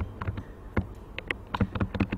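A quick, irregular run of about ten small clicks from a computer mouse scroll wheel as a spreadsheet is scrolled down, over a faint low steady hum.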